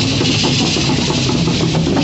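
Many dancers' leg rattles and gourd hand rattles shaking together in a dense, continuous hiss, with drum beats and a steady low hum underneath.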